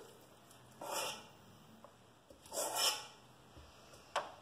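A person sniffing twice through the nose, short airy inhalations about a second in and again near three seconds, taking in the smell of the cookie dough.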